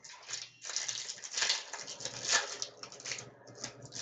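Crinkling and rustling of a trading-card pack wrapper being torn open and handled, a dense crackle of quick small noises that thins out toward the end.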